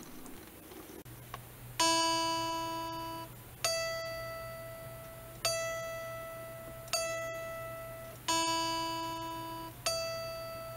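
Strat-type electric guitar's E string plucked six times, about 1.5 s apart, each note ringing and dying away. It alternates between the open string and the fretted octave at the twelfth fret while the intonation is checked against a tuner. A steady low electrical hum runs underneath.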